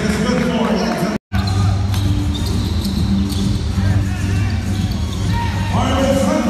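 Basketball game audio in an echoing arena: a ball bouncing on the hardwood court, with voices. The sound drops out completely for a moment about a second in.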